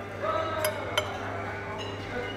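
Cutlery clinking against a plate while eating, with two sharp clinks around the middle.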